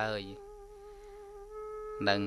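A speaking voice breaks off, leaving a faint, steady hum held on one pitch for about a second and a half before speech returns.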